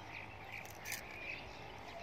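Faint outdoor ambience with a short chirping call repeated about every half second.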